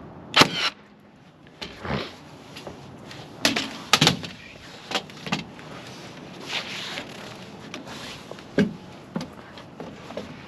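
A cordless framing nailer fires once about half a second in, the loudest sound. Scattered knocks and thumps of lumber being handled on the roof framing follow.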